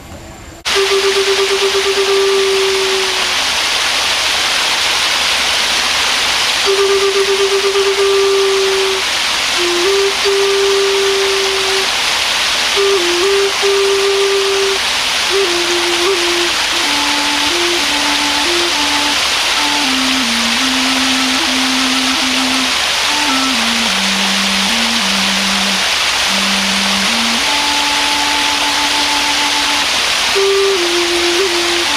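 Native American flute playing a slow melody of long held notes that steps down from high to low, over a steady rush of falling water; both come in about half a second in.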